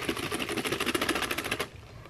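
A rapid, even clicking rattle, about eighteen clicks a second, from a clear plastic tub of old skateboard bearings being handled; it stops abruptly shortly before the end.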